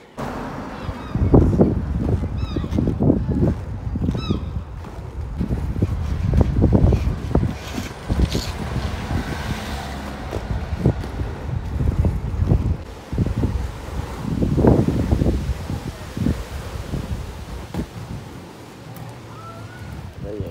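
Skateboard wheels rolling over asphalt and paving slabs: a loud, uneven rumble that swells and fades, with sharp clicks as the wheels cross cracks and joints. A few faint high chirps sound near the start.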